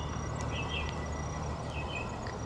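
Outdoor background with no voice: a steady low hum under a faint thin high tone, with a few faint short chirps that are typical of insects.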